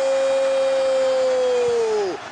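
Football commentator's long, drawn-out shout of 'goal', one held note on a steady pitch that dips and falls away near the end.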